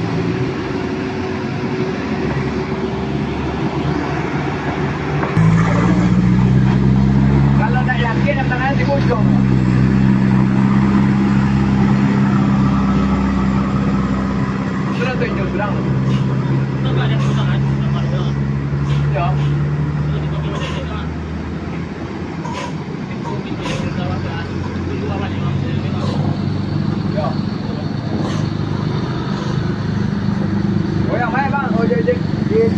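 Heavy vehicles' diesel engines running at low speed through a tight hairpin bend: a deep, steady drone that comes in strongly about five seconds in, eases off around twenty-three seconds, then returns. People's voices call out now and then over it.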